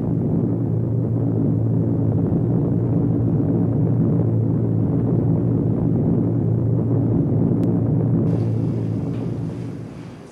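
Steady low drone of a WWII bomber's piston engines, heard from inside the cockpit, fading out near the end.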